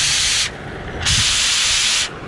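Oxy-acetylene cutting torch hissing in two blasts of cutting oxygen, a short one of about half a second, then a longer one of about a second, with the flame's lower rumble between them. The oxygen lever is pressed to test whether the preheat flame's cones stay still under the oxygen jet, a check on the flame setting.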